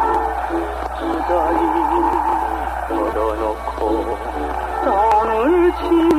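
Old 1959 Korean trot (yuhaengga) recording: a male singer's voice with wide vibrato over band accompaniment, with a steady low hum under the music.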